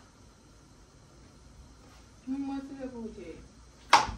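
Quiet room tone, then about halfway in a voice speaks a drawn-out phrase that falls in pitch. Just before the end comes a single sharp smack.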